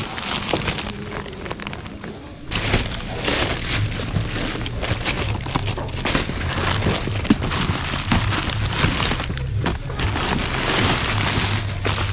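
Plastic packaging crinkling and rustling as hands rummage through a bin of bagged goods, with background music coming in about two and a half seconds in.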